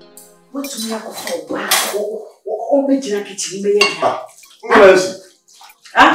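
Dishes and cutlery clattering in a kitchen sink as they are washed by hand. A voice speaks over it in the second half, loudest about five seconds in.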